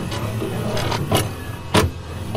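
VCR tape-playback sound effect: a steady mechanical hum and hiss of a video tape deck, with two sharp clicks a little after one second and near the end.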